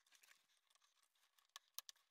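Near silence, with a few faint clicks close together near the end as a small hardened rubber washer is prised off the plastic case's hinge pin.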